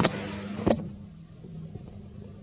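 Two sharp clicks about 0.7 s apart over a steady low motor hum.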